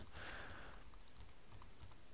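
A few faint, light clicks over low room hiss.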